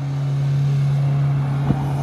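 SUV engine running hard while its tyres spin and slide on loose dry dirt, doing donuts: a steady low drone under a broad gritty hiss, with one sharp knock near the end.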